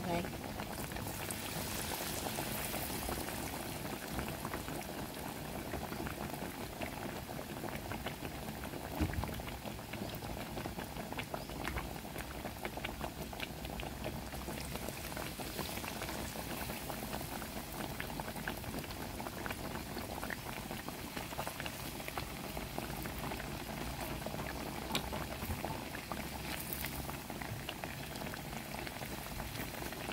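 Battered banana fritters deep-frying in plenty of hot oil in a pan: a steady bubbling sizzle, dotted throughout with small crackles and pops.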